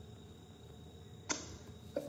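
Quiet background hiss with one short, sharp click about a second and a quarter in.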